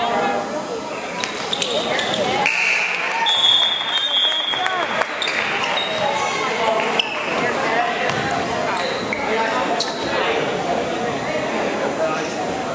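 Spectators' voices and calls in a school gymnasium during a basketball game, with a basketball bouncing on the hardwood court and scattered sharp knocks. A high, steady tone sounds for about a second and a half from about three seconds in.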